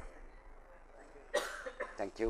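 A single person's cough about one and a half seconds in, against quiet room tone.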